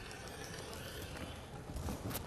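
Rotary cutter rolling through folded layers of fabric along an acrylic quilting ruler on a cutting mat: a steady, quiet cutting noise.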